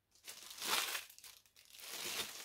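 Packaging crinkling as an item is unwrapped, in two short spells.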